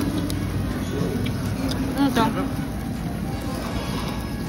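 Busy restaurant din: a steady wash of background noise and voices, with a short voice or sung phrase about two seconds in.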